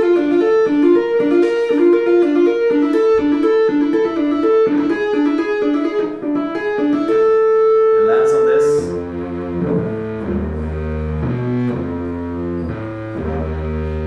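Electric guitar played solo: a fast, repeating three-note figure, then a held note about seven seconds in, followed by slower, lower notes and chords.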